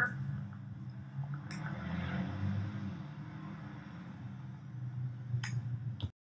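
Low, uneven rumble of outdoor background noise on a handheld phone microphone, with two short clicks, one about a second and a half in and one near the end.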